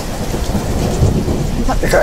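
Steady heavy rain with a low rumble of thunder.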